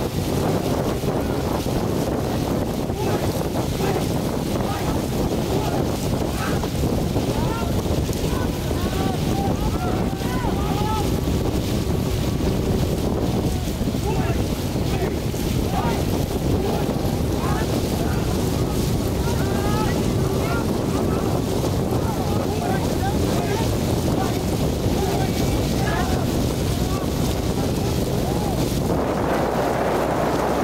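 Heavy wind buffeting on the microphone over a steady low rumble as the camera moves on the water alongside a racing longboat. Faint short voice-like calls come through from about eight seconds in.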